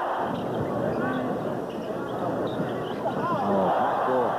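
Arena crowd noise: a steady roar of many voices on muffled old TV broadcast audio, with single shouts rising above it about a second in and again near the end.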